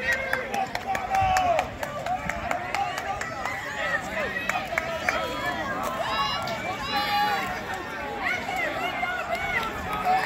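Spectators at a track relay talking and calling out over one another, with a couple of higher, raised shouts of encouragement about six to seven seconds in. A few sharp clicks are scattered through the first half.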